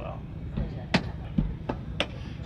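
Sharp knocks and clacks as magnetic blackout window covers are handled against the aluminum trailer body. One loud knock comes about a second in, then two or three lighter ones.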